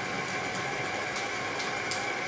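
Steady background hum and hiss with a faint high whine, broken by two faint light clicks, about a second in and near the end, from a spatula stirring gel icing in a small steel bowl.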